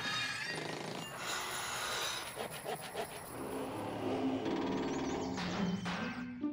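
Cartoon sound effects of clattering and crashing, as of things banging and breaking, then a few sustained musical notes from about halfway through.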